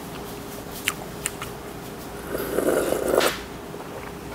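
Soup being slurped from a yellow metal bowl held up to the mouth. Two small clicks come about a second in, then one loud slurp lasting about a second.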